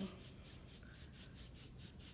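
A nearly dry paintbrush dry-brushing a wooden block, its bristles scratching up and down the wood in quick strokes, about six a second.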